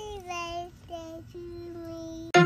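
A young child singing in long held notes, three or four of them, each broken off briefly before the next.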